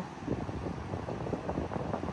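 Wind rumbling and buffeting on the microphone over the steady rush of a river running high and fast.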